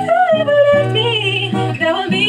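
A woman singing a sustained, gliding melody in English while strumming chords on an acoustic guitar with a capo.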